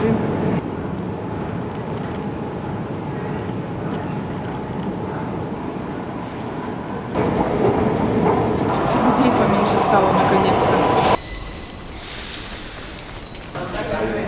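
Metro train noise: a steady running rumble, louder for a few seconds past the middle with a high ringing squeal of wheels on rail. After an abrupt cut near the end comes a brief hissing sound.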